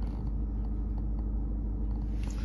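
Steady low rumble of a 1.6 TDI four-cylinder diesel engine idling, heard from inside the car's cabin.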